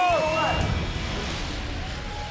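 A man's long, held shout through cupped hands, ending about half a second in, followed by an even rush of noise that slowly fades.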